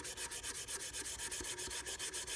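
Dried horsetail (scouring rush) being rubbed briskly along a wooden violin neck, a run of quick, even scratchy strokes about ten a second. This is the final smoothing of the wood after 400-grit sandpaper: the horsetail cuts and burnishes the surface to a sheen at the same time.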